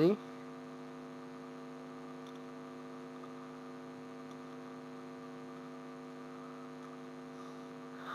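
Steady low electrical hum with evenly spaced overtones, unchanging in pitch and level.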